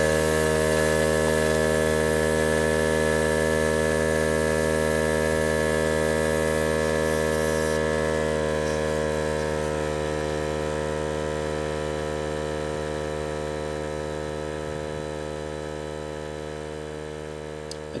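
Harbor Freight portable 12-volt air compressor running steadily with a humming motor tone, pumping air through its coiled hose to reinflate an aired-down tire. The sound slowly gets quieter across the stretch.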